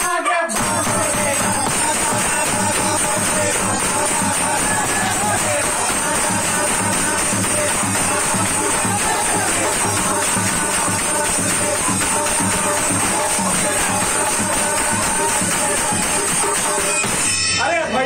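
Group of men singing a Phagwa chowtal song to dholak drums and clashing brass hand cymbals (jhaal) in a fast, steady rhythm. The music cuts off suddenly just before the end.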